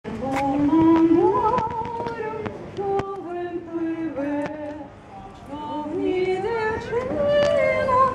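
Women's voices singing a Ukrainian song in long, held notes, with a short break between phrases about five seconds in.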